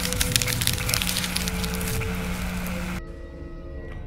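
Electric crackling sound effect for a lightning arc: dense crackles that stop abruptly about three seconds in, over a steady low music drone.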